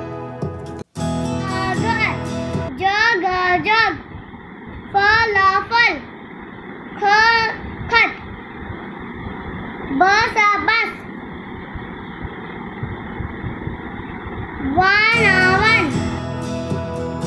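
A young child reading aloud from a picture book in five short, sing-song phrases, with steady background hiss between them. Instrumental music plays until about three seconds in.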